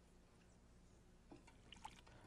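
Near silence: room tone with a few faint light ticks in the second half.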